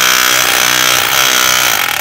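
APR AP35 rotary hammer drill running steadily in chisel mode, its pointed chisel bit hammering into a hard concrete paving block.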